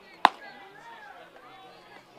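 A baseball smacking into the catcher's mitt once, a single sharp pop with a brief ringing tail, over faint voices.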